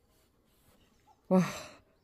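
A single breathy, admiring "wah!" exclamation about a second in, fading out like a sigh, after a near-silent start.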